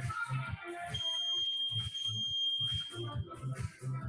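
One long, steady, high electronic beep, lasting about two seconds and starting about a second in, over workout music with a steady beat. The beep is typical of an interval timer marking the end of a Tabata round.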